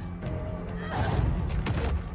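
TV fight-scene soundtrack: a tense score over a heavy low rumble, with sharp hits about a second in and again shortly before the end, and a strained vocal cry.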